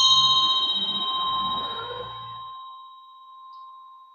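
A metal hand bell struck once, ringing with a clear high tone that fades slowly over a few seconds, its level wavering quickly as it dies away.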